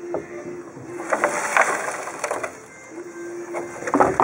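Loose rust and debris rattling and sliding around inside the old steel gas tank of a 1956 Cadillac as the tank is tipped, a gritty scraping hiss with scattered clicks that is busiest in the middle. It is the sound of a tank full of rust scale and junk, one the restorer judges not worth keeping.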